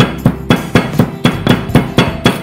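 Stone pestle pounding roasted dried chillies and black pepper in a stone mortar: steady, sharp knocks about four a second.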